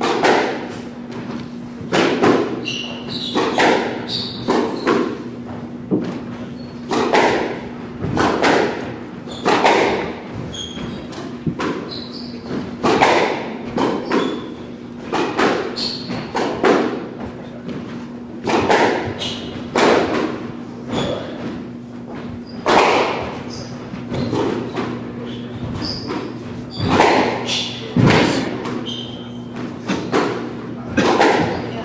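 Squash rally: the ball cracking off racquets and the court walls about once a second, each hit echoing in the court, with short squeaks from sneakers on the hardwood floor between hits.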